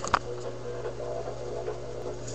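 A steady low electrical hum, with fainter steady higher tones over it. There are a couple of clicks right at the start.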